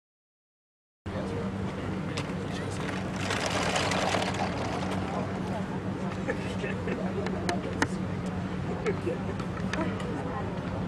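Indistinct murmur of people talking outdoors over a steady low hum, with scattered small clicks; the sound cuts in about a second in.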